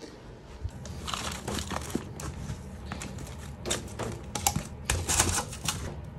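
Hands scooping and packing moist potting mix into small plastic pots. Irregular rustling and scraping of the soil with light clicks, coming in a few clusters, busiest in the second half.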